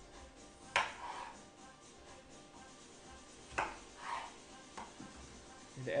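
Chef's knife cutting through raw potatoes onto a wooden cutting board: two sharp knocks about three seconds apart, with a lighter tap near the end, over faint background music.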